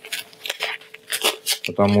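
Masking tape being pulled off its roll in a few short, crackling pulls as it is wound onto a rope, followed by a spoken word near the end.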